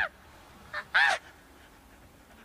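A single short, high-pitched nasal vocal squeal about a second in, rising and falling in pitch, over faint street background.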